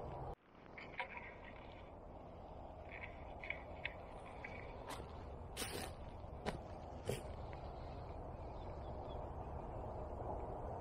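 Quiet outdoor ambience: a steady low rumble of wind on the microphone with a few faint bird chirps. Several short crunches, footsteps on wood-chip mulch, come in the middle.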